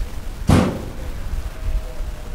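Caterpillar 395 large hydraulic excavator's diesel engine running with a deep, steady rumble. It is a non-Tier 4 engine without emissions equipment, described as unrestricted and 'sounds as it should'. About half a second in, a short, loud rush of noise stands out over the rumble.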